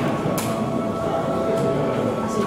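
Background music over a murmur of indistinct voices, with a few light clinks.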